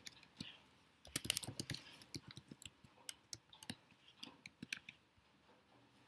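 Computer keyboard typing: a quick flurry of keystrokes about a second in, then scattered single key clicks that thin out near the end.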